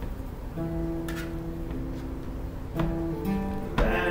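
Acoustic guitars played live: sustained chords ring out from about half a second in, a new chord comes in later, and a sharp strum falls near the end.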